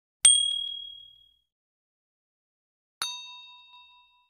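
Two short ding sound effects for a subscribe-button animation: a sharp, high ding about a quarter second in, then a lower, fuller bell-like chime about three seconds in. Each rings out and fades within about a second.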